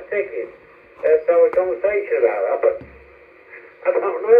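A man's voice from an amateur FM transmission received by a Whistler TRX-2 base scanner and played through its built-in speaker. The speech is thin and narrow-band, in two phrases with short gaps between.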